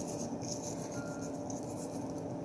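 Faint rubbing of fingertips scattering nigella seeds (qaracörək) over egg-washed pastry dough, over a low steady room hum.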